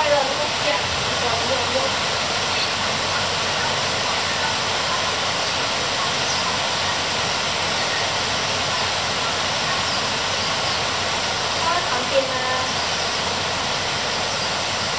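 Heavy rain falling on the broad leaves of a tree: a steady, even hiss with no letup. A few brief faint sounds rise out of it near the start, and a short louder one comes about twelve seconds in.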